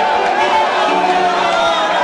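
A church congregation's many overlapping voices, loud and steady, over background music.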